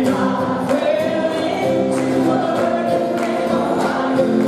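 A woman singing live over a strummed acoustic guitar, with the audience singing along as a crowd chorus.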